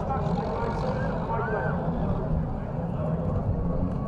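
Heavy recovery loader's engine running steadily near the wrecked cars, with indistinct voices over it.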